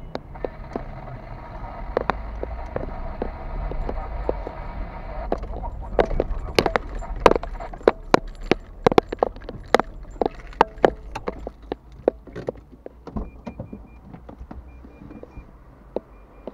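Car driving, a steady low engine and road rumble heard from inside the car, giving way to a quick irregular run of sharp clicks and knocks, the loudest sounds here, once inside the workshop. Faint high beeps come and go near the end.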